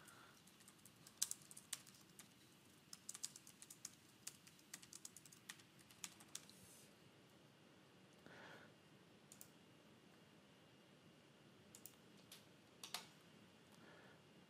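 Faint typing on a computer keyboard: a quick run of keystrokes lasting about five seconds, followed later by a few separate single clicks.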